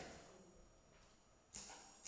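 Near silence in a hall: faint room tone, then one short, sharp tap about a second and a half in, with a brief high ring after it.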